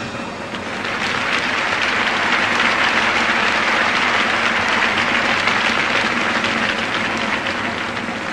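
Circus audience applauding, the clapping swelling about a second in, holding strong and easing toward the end.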